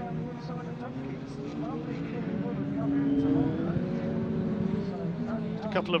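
Engines of several racing pickup trucks running on the circuit, the pitch climbing over a few seconds and then falling away as the drivers accelerate and lift.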